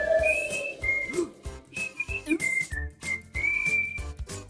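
A whistled tune in short, high held notes with brief gaps, over light, plucky percussive cartoon music.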